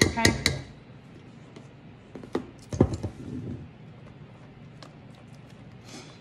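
A metal spoon clinking against a stainless steel mixing bowl, with a couple of sharper knocks a little over two seconds in, then a wooden spoon softly folding and scraping through the thick creamy pudding mixture.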